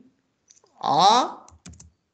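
Computer keyboard keystrokes, a faint one about half a second in and a quick run of clicks near the end, as text is typed into an input field. A short vocal sound from a person is heard about a second in, between the keystrokes.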